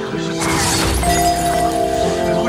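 Sustained dramatic music with a glassy shattering sound effect about half a second in, lasting about half a second, after which a new held note comes in.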